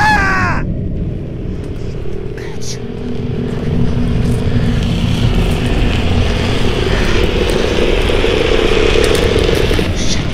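A short falling cry, then a long, deep rumbling growl over a steady hiss, strongest near the end. It is a night field recording that the uploader presents as a Sasquatch growling, the fifth in a series, with a road flare burning.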